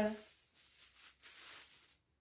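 A woman's voice trails off, then faint rustling of packaging being handled for about a second and a half.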